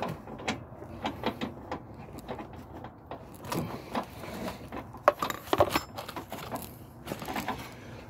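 Ratchet wrench clicking in short, irregular runs as a nut is turned down onto a new trailing-arm bolt, with small metallic clicks of the socket and tools.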